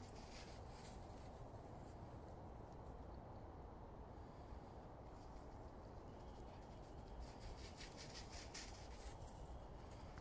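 Quiet woodland ambience: a faint steady low rumble, with light crackling rustles about half a second in and again for a couple of seconds from about seven seconds.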